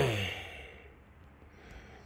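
A man's voiced sigh, falling in pitch and fading out within the first half second, followed by faint room tone.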